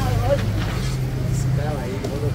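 Indistinct voices talking over a low, steady hum.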